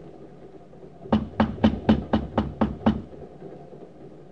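Rapid knocking on a door, a run of about eight quick even knocks at roughly four a second, starting about a second in.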